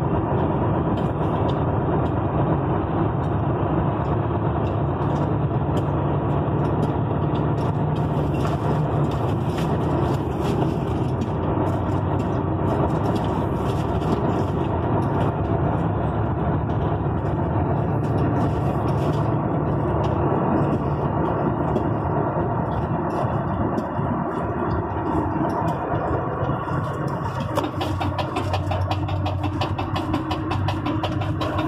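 Engine and road noise heard from inside a vehicle's cab while driving: a steady low drone whose pitch drops lower a few seconds before the end.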